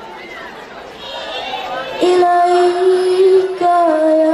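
A girl's solo voice singing Islamic devotional hadroh song into a microphone, with no drums. About two seconds in she comes in on a long held note, breaks off briefly near the end and holds another.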